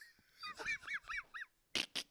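Squealing laughter: about five short high squeaks, each rising and falling in pitch, then a run of breathy, panting laughs near the end.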